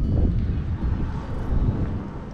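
Wind buffeting the camera microphone: a gusty low rumble that eases slightly near the end.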